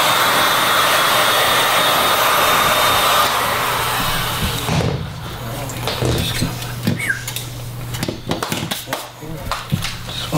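Handheld heat gun blowing steadily, then dying away about four seconds in as it is switched off. After that, scattered light knocks and taps of handling on the workbench.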